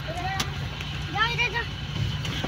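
Steady low engine and road drone heard inside a moving car's cabin, with brief shouted words over it.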